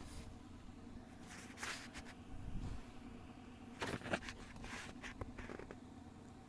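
Faint room noise with a low hum and a few soft clicks and rustles, the clearest near two seconds and four seconds in.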